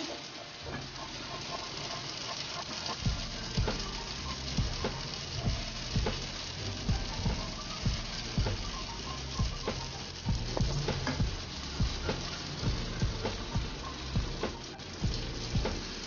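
Capsicum, green chillies and tomato sizzling in hot oil in a non-stick wok, with a silicone spatula knocking and scraping against the pan about once or twice a second as the vegetables are scooped out.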